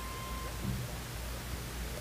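Steady hiss and low hum of an old recording's background noise, with a faint short steady tone in the first part.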